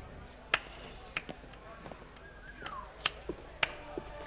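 A few sharp clicks or taps, about five, at uneven intervals, with a short squeak gliding downward a little past halfway.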